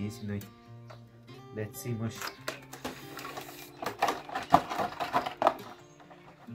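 Background guitar music plays. About four to five and a half seconds in comes a run of sharp, irregular clicks and crackles as a clear plastic clamshell package is handled and opened.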